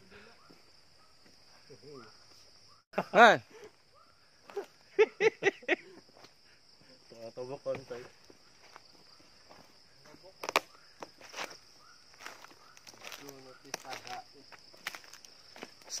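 A steady high-pitched insect buzz, typical of crickets or cicadas at dusk, drops out briefly about three seconds in and then carries on. Footsteps and rustling on dry ground and litter come in as scattered light clicks, mostly in the second half.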